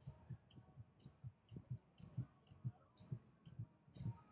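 Footsteps of a person walking on a paved promenade, picked up close by a body-carried camera: soft muffled thuds with light clicks, about two steps a second.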